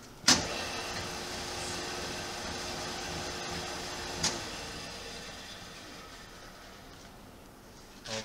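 Hardinge TM milling machine's 1 hp three-phase motor and spindle switched on in high speed with a sharp click, running with a steady hum and a held tone. About four seconds in a second click switches it off and the spindle coasts down, the hum fading away.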